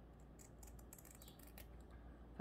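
Faint, quick clicks from about half a second to a second and a half in: steel craft scissors being picked up and handled against grosgrain ribbon, otherwise near silence.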